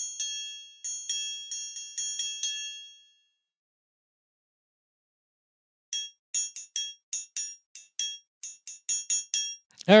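Triangle sample from Logic's EXS24 sampler played as a rhythmic pattern of bright metallic strikes. The first run lasts about three seconds with short ringing decays. After a silent gap of nearly three seconds comes a quicker run of clipped, cut-off hits. The hits sound dead and thuddy, like two dinner knives clinked together.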